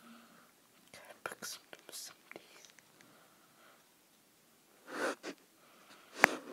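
Faint whispering in a few short breathy bursts, about a second in and again near the end.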